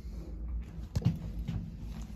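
A 1965 Otis hydraulic elevator car running, with a steady low hum, a sharp knock about a second in and a lighter one shortly after. The rider puts the noise down to the car's rollers.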